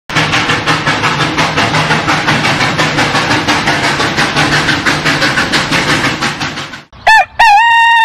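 Cartoon sound effects: a steam train chugging in a fast, even rhythm of about five beats a second, which stops about seven seconds in, followed by a rooster crowing.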